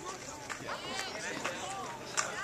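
Faint voices of people talking in the background, with a few light clicks.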